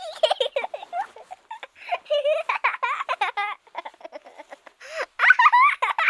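A young child laughing and giggling in quick, high-pitched runs that grow louder near the end.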